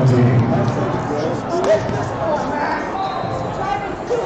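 Indistinct voices and chatter from people in a large hall, with a single sharp thump a little under two seconds in.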